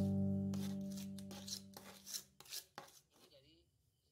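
Background music with a held chord fading out, then a few short scrapes of a metal frying-pan spatula on wet mortar about halfway through.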